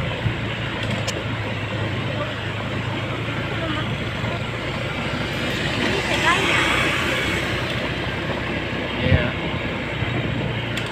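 A vehicle's engine hums steadily, with tyre and wind noise, while riding along a rough, broken road. There is a short thump near the end.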